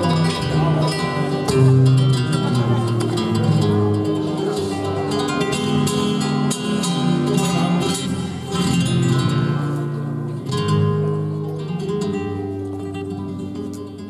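Flamenco guitar playing a fandango passage alone, with plucked note runs and strummed chords, getting quieter near the end.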